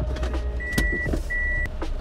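A car's in-cabin warning chime sounds two short, steady electronic beeps, over a low, steady rumble inside the car and a few light clicks.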